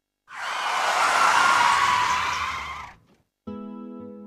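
A rush of noise that swells up and fades away over about two and a half seconds, then cuts to silence. Steady music tones come in near the end.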